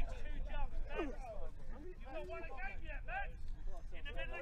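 Men's voices calling out and chatting indistinctly, over a steady low rumble.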